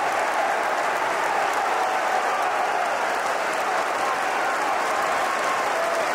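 Football stadium crowd applauding, a steady wash of clapping from a large crowd in the stands.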